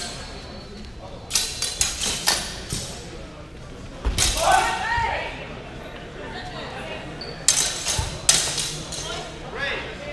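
Longswords clashing in quick flurries of sharp clacks, one about a second and a half in and a second near eight seconds. A short shout comes around four seconds in.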